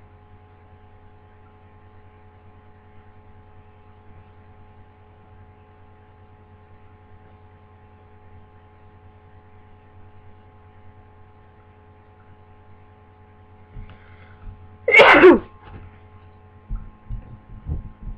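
A person with a cold sneezes once, loudly, about fifteen seconds in, over a steady electrical hum. A few soft short bumps follow near the end.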